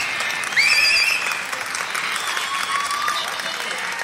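Concert audience applauding after a song, with a few high whistles from the crowd in the first second or so.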